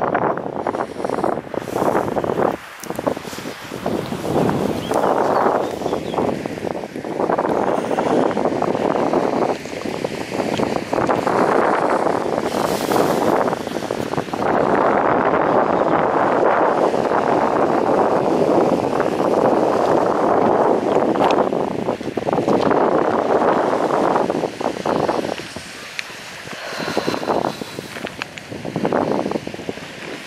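Wind buffeting the microphone in gusts, a loud rough rushing that eases briefly near the end.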